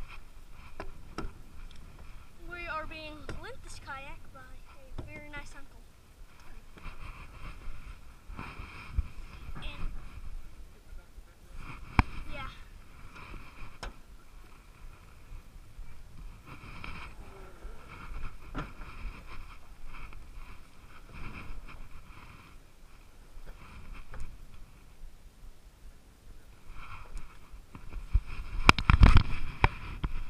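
Irregular knocks, bumps and scrapes of a plastic kayak being handled and shifted on a pickup truck bed, with rubbing noise close to the microphone. A louder clatter of knocks comes near the end.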